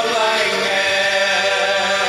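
Mixed church choir of women and men singing a long held chord, the notes sustained with a slight waver.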